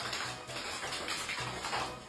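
A large dog shaking itself off in one long, unbroken shake: a fast, continuous flapping rattle of its ears and loose skin.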